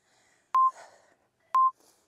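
Workout countdown timer beeping: two short, identical electronic beeps a second apart, each a click with a brief steady tone, marking the last seconds of the exercise interval.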